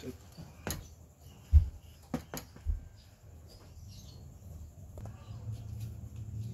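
Handling noises as a digital multimeter is picked up and set down on a metal TV back panel: a few sharp clicks and low thumps, the loudest thump about one and a half seconds in.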